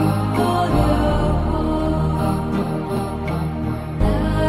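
Background music: slow, sustained tones held over steady low notes, in a meditative, chant-like style.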